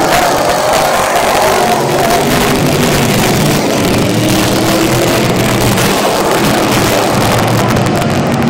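Several dirt-track street stock race car engines running at speed around the oval, their pitches rising and falling as the cars pass.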